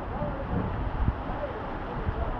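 Heavy rain falling on a corrugated lámina roof and the surrounding trees, a steady hiss with a low rumble of wind.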